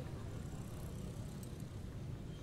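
Steady low rumble of distant street traffic as background ambience.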